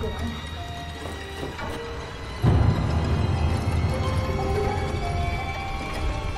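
Tense horror-film score of sustained notes over a low drone, which jumps suddenly to a loud, deep pulse about two and a half seconds in.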